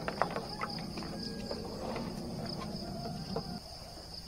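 Insects chirring steadily in a fast, pulsing high trill like crickets, with scattered light scuffs and clicks of footsteps in rubber slippers on dirt ground.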